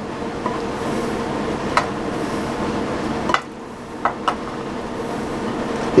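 Shaved roast beef sizzling steadily as it is spooned onto buttered bread in a hot skillet, easing off briefly after about three seconds. A silicone spatula clicks against the ceramic bowl a few times.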